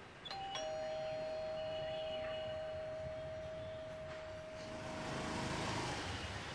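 Electric doorbell chime ringing a two-note ding-dong, a higher note then a lower one that rings on and fades slowly. Near the end a motorbike engine grows louder as it comes closer.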